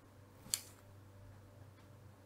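A single short scratch of a fineliner pen tip on paper about half a second in, over a faint steady low hum.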